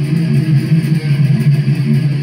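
Distorted electric guitar playing a fast death metal rhythm riff in a low register, the notes coming in a rapid, even chop.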